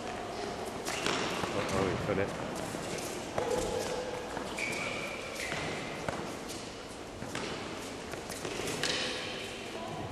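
Junior tennis rally: child-sized rackets striking a soft red mini-tennis ball, with the ball's bounces on the court, a sharp hit or bounce every second or two, over the murmur of voices in a large indoor hall.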